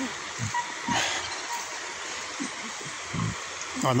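Shallow river running over a bed of stones: a steady rush of water. A few soft low thumps come through it.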